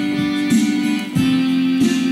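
Electronic keyboard being played: quick notes struck over a held low note, with a brief dip in loudness about a second in before the playing resumes.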